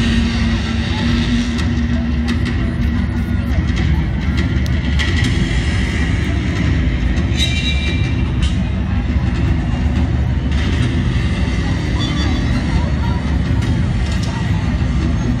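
Stadium crowd chatter, with voices rising here and there, over a steady low rumble.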